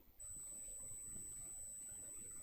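A steady, high-pitched electronic tone that switches on suddenly just after the start and holds at one pitch, over faint room noise.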